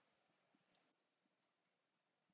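Near silence: room tone, with one faint, short click just under a second in.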